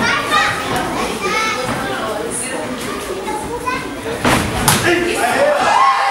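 Several voices calling out over a kickboxing bout, with two sharp thuds of gloved strikes landing about four and a half seconds in.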